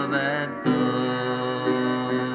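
A man singing a slow ballad over upright piano chords. His voice glides at the start and settles into held notes, and a new piano chord is struck just under a second in and again about a second later.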